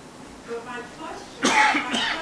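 A person coughs loudly once, a short burst about one and a half seconds in, after faint speech.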